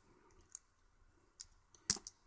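Craft knife blade cutting the insulation sleeve off the wire joints of an LED strip connector: a few faint clicks, then one sharper click near the end.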